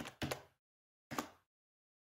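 Computer keys clicking as a value is typed in: a few quick clicks in the first half-second and one more about a second in.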